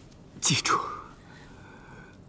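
A man speaking in a hushed, whispered voice: one short breathy phrase about half a second in, then only quiet room tone.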